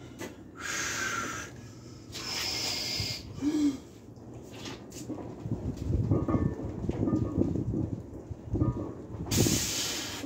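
A man breathing hard from the exertion of a heavy bench press set, with several forceful hissing exhales, a short grunt about three and a half seconds in, and rougher straining breaths in the second half.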